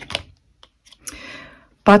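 A few light clicks and taps followed by a short soft rustle: tarot cards being handled and laid out on a table. A woman's voice starts speaking near the end.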